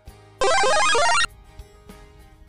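A short, loud musical sound effect: a rapid run of bright, stepping notes lasting under a second, used as a 'two minutes later' transition sting. It plays over quiet background music with a soft steady beat.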